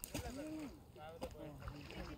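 People's voices talking, the words unclear. From the middle on, a low steady hum sits underneath.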